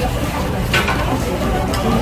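Restaurant room sound: background voices with the clatter of dishes as side dishes are set out on a nearby table.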